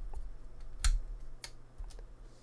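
Small clicks as the battery connector of a 2015 MacBook Air is pulled straight up out of its socket on the logic board: a sharp click a little under a second in and another about half a second later, with fainter ticks around them.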